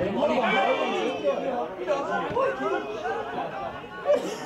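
Several people's voices talking over one another: indistinct chatter with no clear words.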